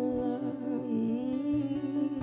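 Several voices singing softly in harmony over sustained keyboard and acoustic guitar, a gentle passage of a live acoustic song.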